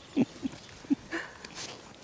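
A person laughing in short, evenly spaced 'ha' bursts that fade out within the first second, followed by a couple of faint breathy chuckles.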